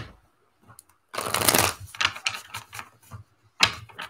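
Tarot deck being shuffled by hand: a rustling flutter of cards about a second in, then a few light clicks of card edges and another short rustle near the end.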